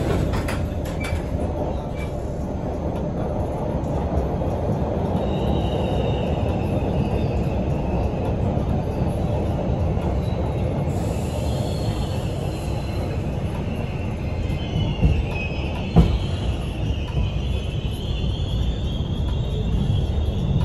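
A Hawker Siddeley-built MBTA Orange Line 01200-series subway car running, heard from inside: a steady low rumble of wheels on rail. From about a quarter of the way in, a high squeal from the wheels wavers up and down in pitch and grows stronger near the end. There is a sharp knock about three quarters of the way through.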